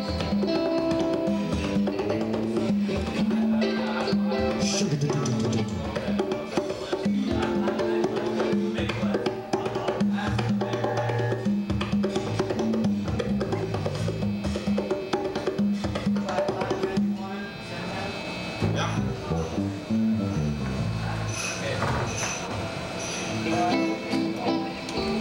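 Live band playing: electric bass line moving under electric guitar, with congas and drum kit keeping a steady rhythm.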